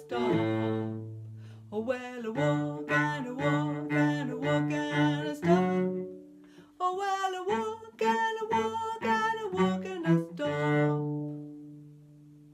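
A woman singing a children's action song over a low instrumental accompaniment, ending on a held note that fades away near the end.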